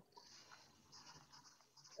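Near silence: faint room tone with a light high hiss.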